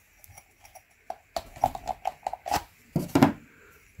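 Handling noise of a pleated oil filter cartridge being pulled out of its metal filter cover: scattered clicks and scrapes, a quick run of small pitched taps in the middle, and a few louder knocks past halfway.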